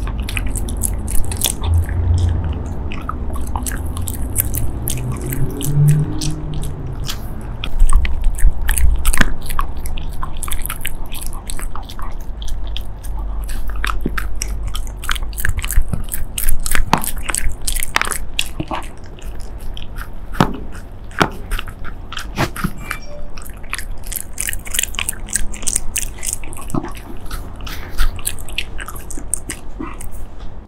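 Shiba Inu chewing and biting a chewy chicken skewer treat close to the microphone: a run of irregular sharp clicks and crunches from its jaws.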